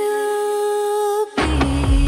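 Synthpop song: one long held sung note, then about one and a half seconds in a heavy low bass and beat come in.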